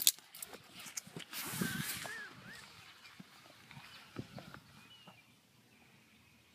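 Faint rustling and soft steps on a grass lawn, with a few faint high chirps about two seconds in.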